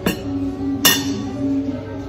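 Two sharp clinks of glassware being handled on a table, the second louder, under a second apart, over steady background music.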